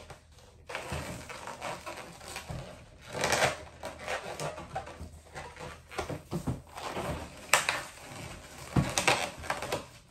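Latex twisting balloon being handled, knotted and twisted by hand: irregular rubbing and rustling with a few short squeaks.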